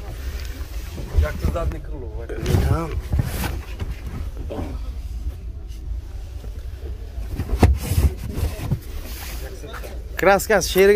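Wind rumbling on the microphone, with snatches of voices nearby. There is one sharp knock a couple of seconds before the end.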